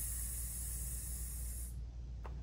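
A woman voicing a long, steady 'sss' hiss, the sound of the letter S, which cuts off near the end.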